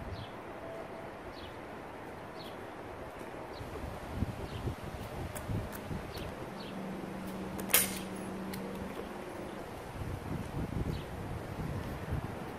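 Quiet outdoor background with faint scattered ticks and a low steady hum in the middle. About eight seconds in comes one sharp knock: a Nerf foam axe weighted with metal washers landing after a throw.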